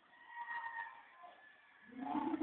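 Faint, distant voices, with a drawn-out call about half a second in.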